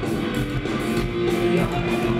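Punk band playing live: electric guitars over drums in a steady, loud rhythm.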